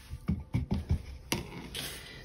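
Five or so light taps and clicks of small objects being handled, the sharpest about a second and a half in.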